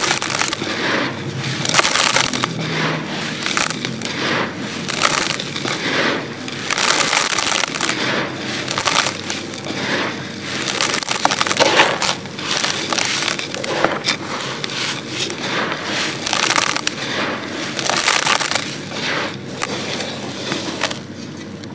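Dry, gritty sand pieces crumbled between the fingers and poured in handfuls into a clay pot: a dense crackle and hiss of falling grains that surges every second or two.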